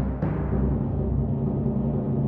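Orchestral music opening on a sustained low drum rumble, with two sharp strikes near the start.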